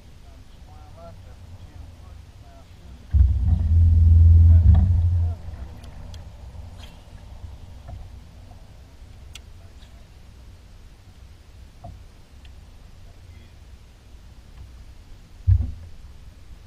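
Low hum of a bow-mounted electric trolling motor on a bass boat, with a loud low rumble that starts abruptly about three seconds in and runs for about two seconds, and a short one near the end.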